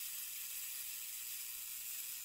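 A steady, faint hiss, mostly high in pitch, with no other sounds.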